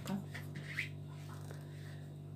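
Quiet room with a steady low hum and a few faint, brief handling sounds from a small plastic eyeliner tube being turned in the hands.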